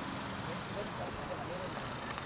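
Steady outdoor background rumble with faint, distant voices.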